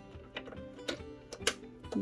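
A few light plastic clicks as the clear bobbin cover plate of a Baby Lock Jazz II sewing machine is set back into the needle plate, over soft background music.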